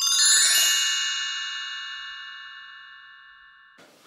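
Shimmering bell-like chime sound effect: a bright cluster of high ringing tones struck at once over a brief rushing noise, then fading steadily for nearly four seconds until it is cut off just before the end.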